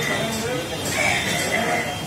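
Several men shouting, their raised voices overlapping in rising and falling calls.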